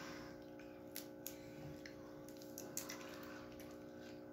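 Faint, wet cracking and squishing of boiled crawfish shells being twisted apart and peeled by hand, with a few soft clicks, over a steady low background hum.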